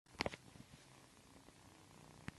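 A kitten purring faintly, with two quick clicks just after the start.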